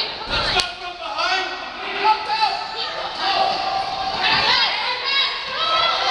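Voices shouting and calling across an indoor arena during a children's box lacrosse game, with one sharp knock about half a second in.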